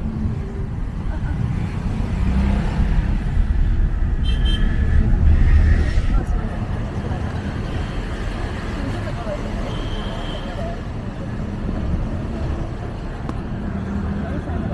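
Road noise inside a moving small Suzuki taxi: a steady low rumble of engine and tyres with traffic around, swelling briefly about five seconds in.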